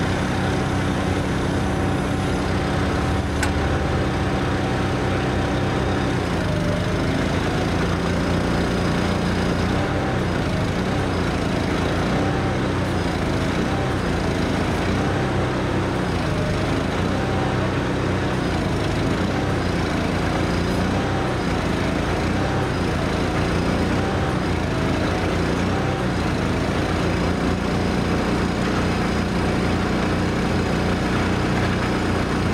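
Heavy engines running steadily, their note shifting about six to seven seconds in.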